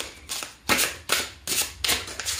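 A deck of Tarot of Mystical Moments cards being shuffled by hand, overhand, packets of cards brushing and slapping together in quick, uneven strokes, about six in two seconds.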